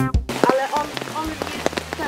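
Background music cuts off just after the start, leaving steady rain with individual drops striking close by.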